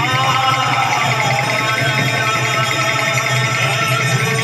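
Live kirtan music: a barrel-shaped hand drum and other percussion keep a steady rhythm, with a gliding melody line in the first couple of seconds.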